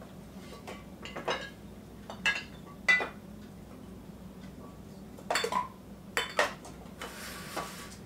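Glass bottles and jars clinking and knocking against each other and the countertop as they are moved about in a rummage through a crowded kitchen counter, in irregular taps with the loudest about three seconds in. A short rustle follows near the end.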